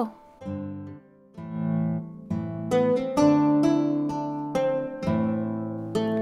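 Background instrumental music of plucked string notes, each ringing and fading, in a gentle melody with a short pause about a second in.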